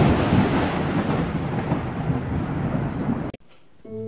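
Thunder sound effect: a loud thunderclap at the start that dies away into a rolling, rain-like hiss, then cuts off suddenly about three seconds in.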